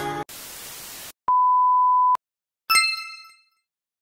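Edited-in transition sound effects: a brief burst of static hiss, then a steady high electronic beep lasting under a second, then a bright chime that rings out and fades.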